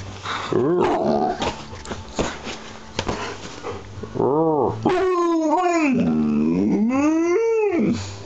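Alaskan malamute "talking": a run of drawn-out, rising-and-falling howling moans, most of them in the second half, the last one the longest. This is the dog's way of asking to be let out. Knocks and rustling come in the first half.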